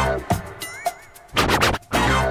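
DJ mix of a drum beat with turntable record scratching: loud scratch sweeps at the start and again about a second and a half in, over hits about twice a second.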